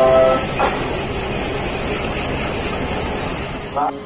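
Diesel-electric locomotive hauling a passenger train into a station: a steady rumble of engine and wheels on rail, coming in as a short stretch of music ends. A brief voice calls out near the end.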